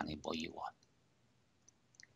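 A man speaking into a headset microphone; his voice stops less than a second in. It is followed by near silence, with two faint clicks near the end.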